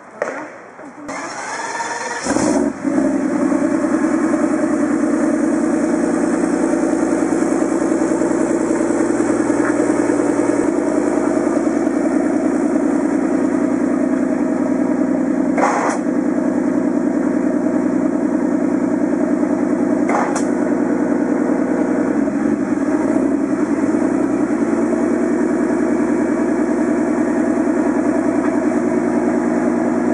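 Tramontana R's mid-mounted twin-turbocharged Mercedes-Benz 5.5-litre V12 cranking over and catching about two seconds in, then idling steadily. Two brief sharp clicks stand out over the idle in the middle.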